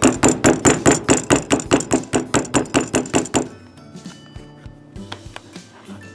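A hand rapidly slapping a thin clay slab down onto a plastic texture mat, about seven pats a second, stopping about three and a half seconds in. Faint background music continues after.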